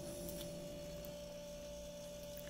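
Steady electrical hum, one constant tone with a weaker low drone beneath it.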